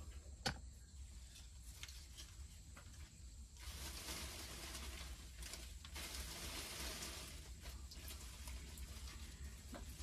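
Faint rustling of houseplant leaves and stems being handled and untangled, with a few small clicks near the start. A steady rustle sets in a few seconds in.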